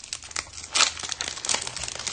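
Foil wrapper of a football trading-card pack being torn open and crinkled by hand: a run of crackling rustles, loudest a little under a second in.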